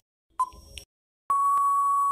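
Quiz countdown-timer sound effect: one short beep about half a second in, the last of a once-a-second countdown, then past halfway a long steady beep that marks time running out.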